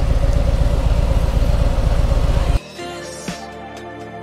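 Touring motorcycle engine running at low riding speed, heard from a camera on the moving bike. About two and a half seconds in it cuts off abruptly and background music with a slow beat takes over.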